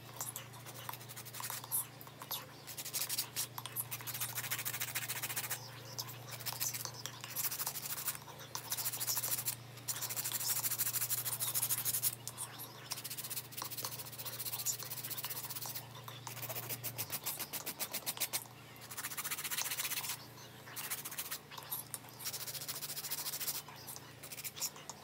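Hand-held nail file rasping back and forth across long acrylic nails, in quick runs of strokes a second or two long with short pauses between, shaping the nails. A faint steady low hum underneath stops about 17 seconds in.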